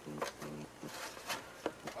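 IMSAI 8080 CPU circuit board being slid back down into the computer's S-100 card cage: a few light clicks and scrapes of the board against the card guides.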